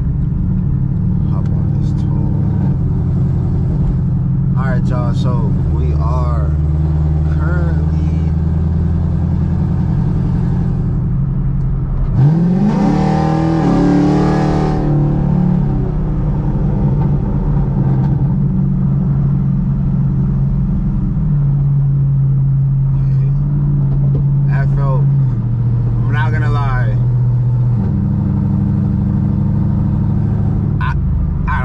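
6th-gen Camaro SS's V8 heard from inside the cabin at highway cruise, then a hard full-throttle pull about twelve seconds in: the engine note rises sharply for about three seconds before the throttle lifts and it settles back to a steady drone. The engine is running a freshly flashed E85 tune.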